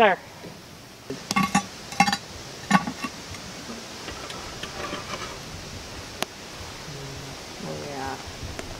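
Metal lid lifter catching and lifting the cast-iron lid of a Dutch oven, with several ringing metallic clanks in the first three seconds and a single sharp click later on.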